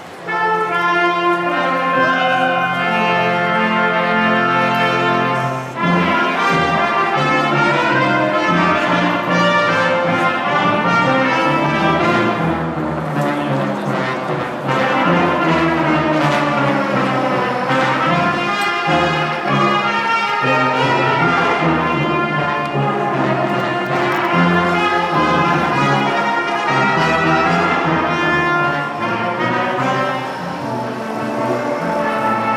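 A wind band of trumpets, trombones, French horns, low brass, saxophones and drum kit playing. It opens with a loud held chord for about five seconds, then moves on into a livelier passage with changing notes.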